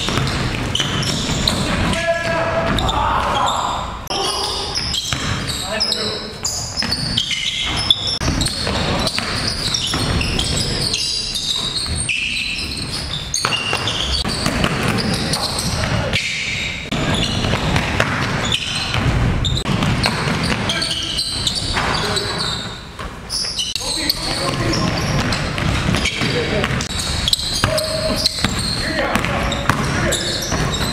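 Live basketball game sound: a ball dribbling and bouncing on a gym's hardwood floor, with many short sharp knocks, mixed with players' indistinct voices and calls.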